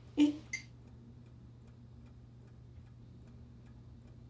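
A clock ticking faintly and steadily in a quiet room over a low, even hum. It follows a short, sharp voice sound right at the start.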